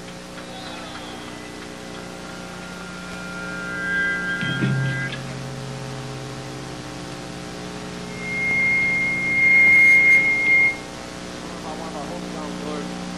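A live band's amplifiers humming steadily between songs. A low bass note comes in about four and a half seconds in, and a high, steady held tone sounds from about eight to eleven seconds, the loudest moment.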